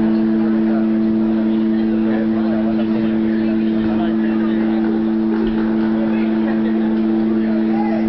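A sustained drone of two steady notes from the band's amplified instruments, held without change, with a higher note joining near the end, over audience chatter.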